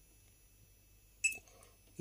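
Mostly quiet room tone, broken once a little past halfway by a short click with a brief high beep: a key press on a Gent Vigilon fire alarm panel's keypad.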